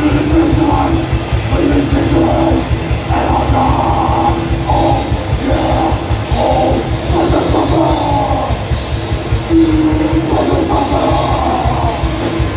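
Death metal band playing live at full volume: distorted electric guitars and bass riffing over fast, dense drumming, heard from the crowd.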